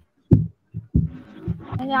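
Several short, dull low thumps with quiet between them, then a woman's speech begins near the end.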